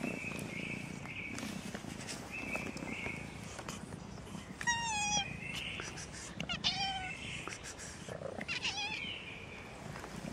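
Domestic cats meowing up close: three meows that bend up and down in pitch, about five, six and a half and nine seconds in, with a low purr underneath.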